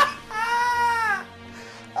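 A man's voice drawn out on one high note for about a second, dipping at the end, over steady background music.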